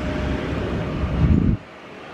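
Gusty wind rumbling on the microphone over outdoor street noise. It drops off suddenly about one and a half seconds in, leaving a quieter steady background.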